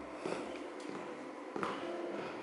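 A few faint, sharp clicks of high-heeled shoes stepping across a stage floor, the clearest about one and a half seconds in, over a quiet hall background.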